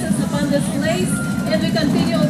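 Announcer's voice over a public-address system with a steady low rumble underneath.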